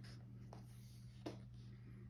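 Near silence over a steady low hum, with two brief soft sounds of hands on the paper pages of a hardcover photo book, about half a second in and just past one second, the second a little louder.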